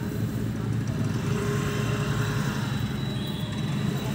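Steady low rumble of road traffic heard from inside a car cabin, with the car's engine idling while stopped in traffic. A faint thin tone rises out of it for about a second in the middle.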